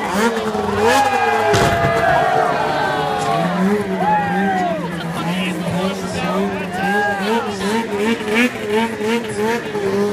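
Off-road engines revving, the pitch rising and falling. From about six seconds in, the throttle is blipped over and over, about two revs a second, above a steady lower engine note.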